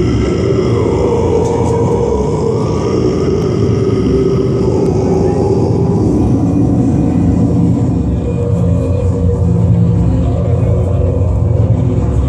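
Black metal band playing live, a loud, dense wall of distorted sound with a heavy low rumble, picked up from within the crowd.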